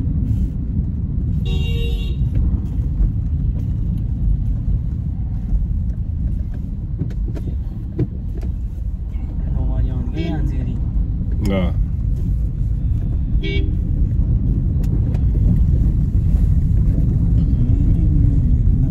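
Steady road rumble inside a moving car's cabin, with a short car horn toot about two seconds in and another a little past the middle.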